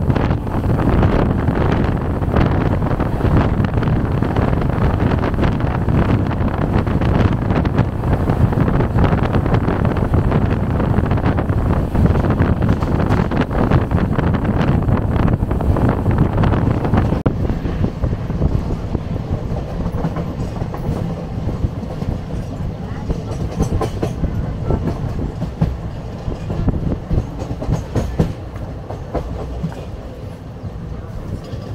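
Passenger train running at speed, heard from the coach doorway: steady rumble of wheels on rails and rushing air, with rail-joint clicks. The noise drops somewhat and thins out about seventeen seconds in.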